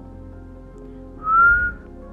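A person whistling one short note, about half a second long and rising slightly in pitch, over soft background music.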